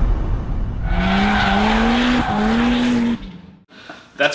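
Car engine revving up in two rising pulls with a brief break between them, like a shift up a gear, over a hiss that may be tyre squeal. It fades out about three and a half seconds in.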